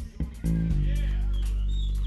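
Electric bass guitar heard through the PA: a few short plucked notes, then about half a second in a deep low note that rings on.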